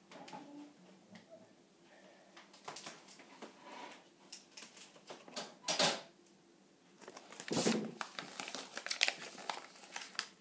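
Paper booklet rustling and crinkling as it is handled and folded, with two louder crackles past the middle and a run of smaller rustles near the end.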